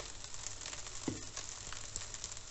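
Chicken fried rice sizzling steadily in a hot wok, with one brief faint knock about halfway through.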